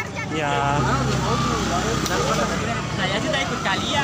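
Honda motorcycle engine idling with a low, steady hum, under people's chatter.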